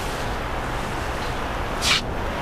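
A steady rushing noise, with a short sharp hiss about a second and three quarters in.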